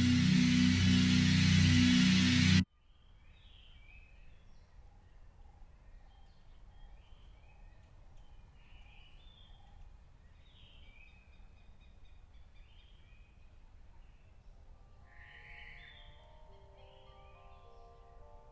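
A loud, dense film score cuts off suddenly about two and a half seconds in. Faint outdoor ambience with scattered birdsong follows, and soft sustained musical notes enter near the end.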